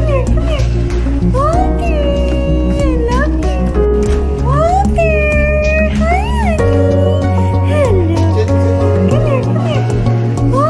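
Domestic cat meowing over and over in long, drawn-out meows that rise and fall, some held for about a second. Background music with a steady bass line plays underneath.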